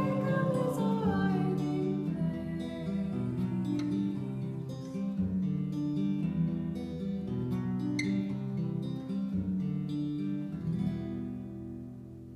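Steel-string acoustic guitar played alone as a closing instrumental, with the last sung note trailing off in the first moment. The guitar dies away near the end.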